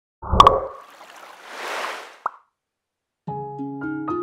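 A cartoon plop-and-splash sound effect, followed by a rising whoosh and a short blip. A little over three seconds in, a gentle instrumental intro of struck, sustained notes begins.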